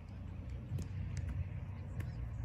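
Low, steady outdoor rumble with two faint ticks around the middle.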